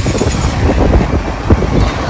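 Ride on the back of a motorcycle taxi: the small motorcycle engine running with rough, steady road and wind noise.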